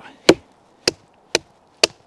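Wooden baton knocking on the spine of a Solognac Sika 100 stainless hunting knife four times, about two strikes a second, driving the blade down through a piece of maple; the first strike is the loudest.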